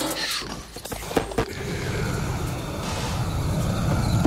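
Low rumbling noise texture from an abstract electronic track, building gradually, with two sharp clicks just over a second in.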